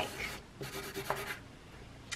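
Marker pen drawing on paper: two quick runs of strokes that stop before halfway through.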